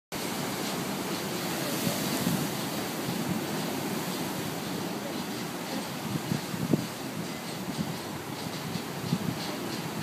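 Rough sea surf breaking and washing against concrete tetrapods on a breakwater: a steady rush of water with a few louder crashes.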